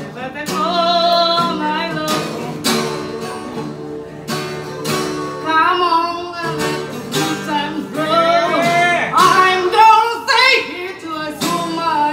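A young woman singing in phrases while strumming chords on an acoustic guitar.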